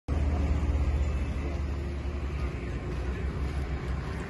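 Low, steady motor-vehicle engine rumble with road traffic noise, heaviest in the first half and then easing a little.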